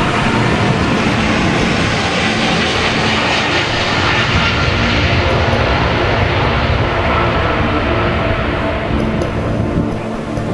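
Boeing 777 twin-engine jet airliner at takeoff power on its runway roll, a loud, steady jet engine noise that peaks about midway as it passes and eases slightly near the end as it lifts off and moves away.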